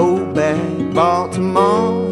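Folk song: a man singing a verse over acoustic guitar.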